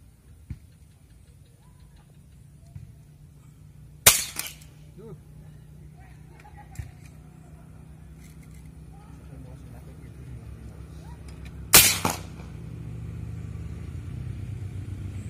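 Two shots from a PCP air rifle, about eight seconds apart. Each is a sharp crack followed about half a second later by a smaller second report.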